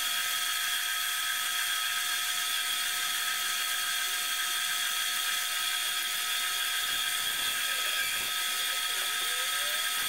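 Lathe running with a hand-held turning tool cutting a spinning cast cholla-skeleton blank: a steady high whine over a hiss of cutting.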